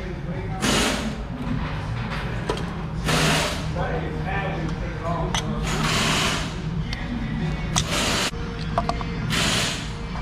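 Pliers scraping and clinking against the thin steel canister of a cut-open oil filter held in a vise, as the inner filter cartridge is pried and pulled loose. There are several short scrapes a few seconds apart, with small metal clicks between them.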